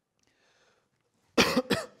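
A man coughs into a microphone, a loud double cough about a second and a half in.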